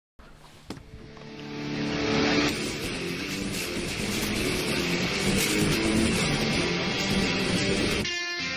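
Opening of a heavy rock soundtrack: a dense, engine-like roar swells up over the first two seconds and then holds loud and steady.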